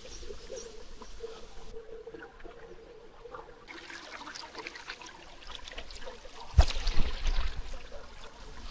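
Small woodland stream trickling over rocks. About six and a half seconds in, a sudden loud thump, then a couple of seconds of louder, rougher noise.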